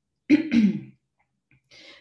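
A person clearing their throat once, a short rough burst that drops in pitch and fades within about half a second.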